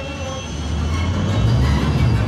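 Film soundtrack: orchestral score over the deep engine rumble of the Millennium Falcon sound effect as the ship flies into an asteroid field, the rumble growing louder in the second half.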